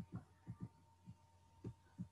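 Faint, dull taps of computer keys or mouse buttons, about seven in two seconds, some in quick pairs, over a steady low hum.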